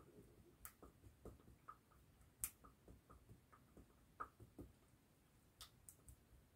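Faint, irregular clicks and taps of a broken-off brush handle stirring latex and paint in a small plastic tub, the stick knocking against the tub's walls; the loudest tap comes about two and a half seconds in.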